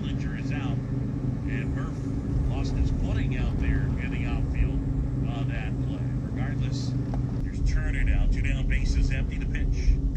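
A car driving along a road, heard from inside the cabin: a steady low engine and road rumble.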